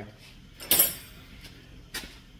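A single short, sharp clatter with a hissy tail about two-thirds of a second in, and a faint click near the end, over a quiet room. No porting grinder is running.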